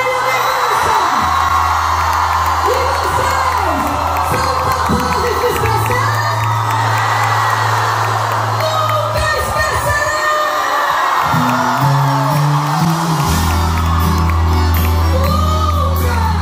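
Live sertanejo band music with accordion, acoustic guitars and keyboard, a singer's voice over long held bass notes, and the crowd cheering and singing along.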